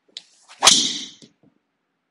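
A quick swish that builds to a sharp crack about two thirds of a second in, then fades within about half a second.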